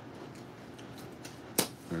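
Scissors snipping through the paper currency strap around a stack of banknotes: one sharp snip about one and a half seconds in.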